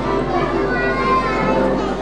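Crowd of children chattering in a hall, with music mixed in.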